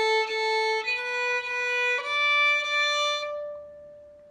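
Solo violin playing three long bowed notes, each a step higher than the last. The third note is held, then rings out and fades.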